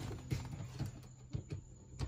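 A few faint, scattered clicks and knocks of metal hardware being handled and fitted at a car's gear-shifter mount.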